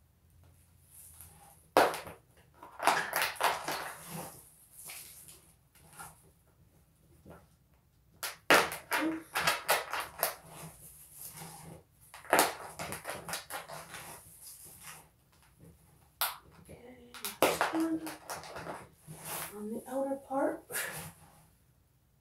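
Irregular rustling and crinkling of plastic with sharp clicks and knocks, in bursts separated by short pauses, as a plastic plant pot and cucumber seedling are handled.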